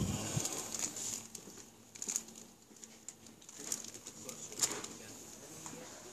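Supermarket aisle background. A sharp knock right at the start, then scattered light clicks and rustles of handling, over a faint steady high-pitched whine and low hum.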